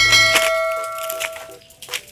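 A bright bell-like ding, struck once, that rings out and fades over about a second and a half: the notification-bell sound effect of a subscribe-button animation, over background music with a deep bass.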